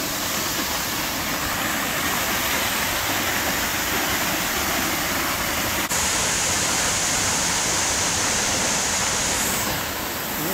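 Carter Falls, a forest waterfall, rushing steadily: an even, unbroken noise of falling water, with a faint click about six seconds in.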